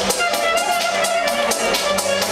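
Electronic dance music from a DJ set playing loud through a club sound system, with a steady, evenly ticking beat under a sustained melodic synth line.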